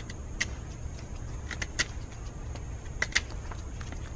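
Pohl Force Mike One folding knife whittling a wooden stick: a handful of short, sharp cutting scrapes, some in quick pairs, over a steady low rumble.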